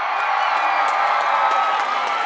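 Crowd cheering with high-pitched whoops and screams, with a few faint claps, steady throughout.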